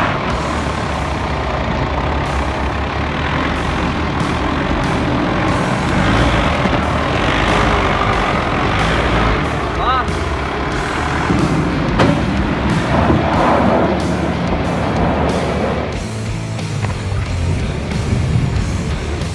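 Ford Ranger ute's engine working under load as it climbs over steep dirt mounds, with its tyres churning loose dirt.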